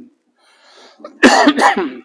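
A man clears his throat: one short, rasping, cough-like burst a little past a second in.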